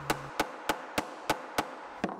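Hammer blows on a bent steel plane cutting iron laid flat on a wooden workbench, knocking the blade flat again. The strikes are sharp and evenly spaced, about three a second.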